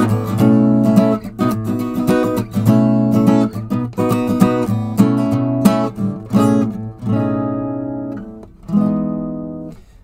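Acoustic guitar strummed in a steady rhythm, playing a 13th chord in a different voicing. About seven seconds in the strumming stops, and two chords are struck once each and left to ring and fade.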